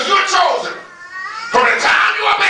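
A man's voice through a microphone and loudspeakers, in two loud outbursts with a pause of about a second between them, not in words that can be made out.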